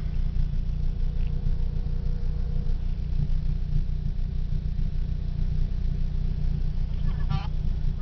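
Car engine and road rumble inside the cabin of a moving car, a steady low drone.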